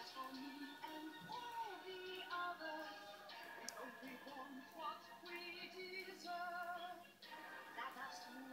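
Animated-film song played through a television's speakers and picked up in the room: female voices singing over backing music.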